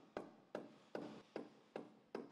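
A steady run of sharp, evenly spaced knocks, about two and a half a second.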